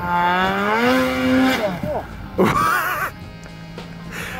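Snowmobile engine revving up in a smooth rising whine for about a second and a half, then cutting off as the sled bogs into deep powder. A person's short shout follows about two and a half seconds in.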